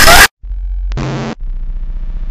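Harsh, very loud distorted noise blast that cuts off abruptly, a split second of dead silence, then choppy, stuttering low rumbling noise with a short louder burst about a second in: glitch-edited, earrape-style distorted audio.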